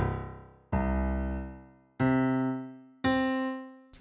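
Digital stage piano playing single notes one at a time, about a second apart, each left to ring and fade. The notes climb the keyboard, counting up the Cs toward middle C (C4).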